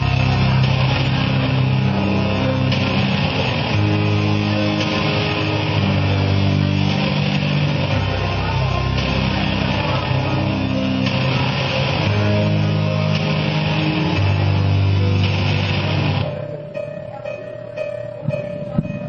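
Rock band playing live with loud electric guitar and bass over a changing bass line. About sixteen seconds in the full band drops away suddenly to a quieter passage with one held note.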